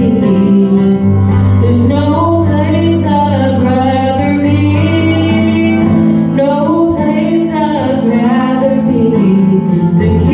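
A woman singing a song into a microphone while accompanying herself on a keyboard, her voice carrying the melody over held chords and low bass notes.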